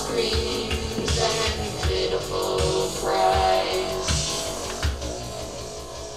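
Electronic track playing with a steady drum-machine beat, electric guitar, and a woman's voice sung through a vocoder.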